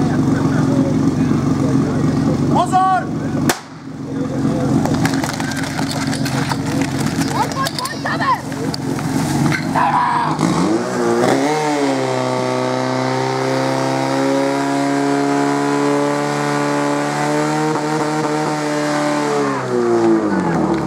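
Portable fire pump engine running steadily, then revving up sharply about ten seconds in and holding high revs as it pumps water through the attack hoses, dropping away near the end. Shouts and voices from spectators over the first half.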